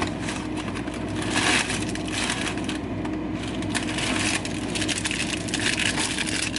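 Cardboard and plastic food packaging crinkling and rustling as frozen food boxes and bags are pulled from a freezer and handled, loudest about a second and a half in. A steady low hum runs underneath.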